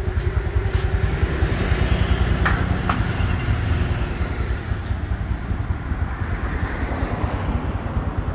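Honda 125 cc four-stroke underbone motorcycle engine idling steadily while it warms up, with two light clicks about halfway through.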